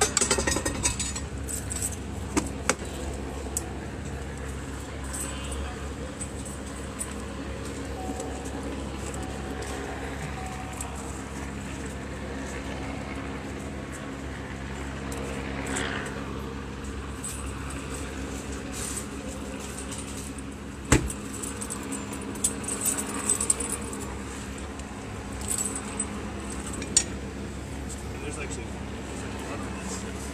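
Steady street noise with a low engine hum, broken by scattered sharp metallic clinks and jangles of small hard objects handled in a bag: a few near the start, one loud clink about three-quarters through, and a quick cluster near the end.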